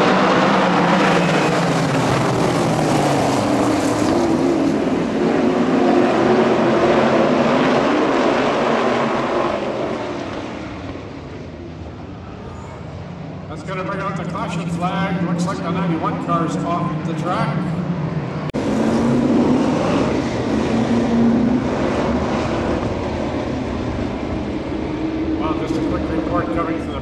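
A pack of winged sprint cars' V8 engines running hard and passing in a loud, rising and falling wall of sound. It fades about ten seconds in, and then comes back suddenly louder about two thirds of the way through.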